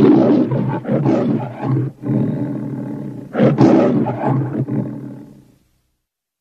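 The MGM logo's lion roar: a lion roaring twice, each roar a run of growling pulses, with the second starting a little past halfway through. It stops shortly before the end.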